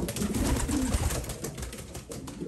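Homing pigeons in a breeding cage, a cock cooing low with a busy scuffle of wing flaps and feet on the wooden floor. The cock and hen have just been put together to pair, and this is courtship cooing and display.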